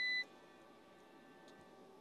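A UPS's front-panel beeper giving one steady electronic beep as its OFF button is held to switch the unit off. The beep cuts off sharply about a quarter second in, and near silence follows.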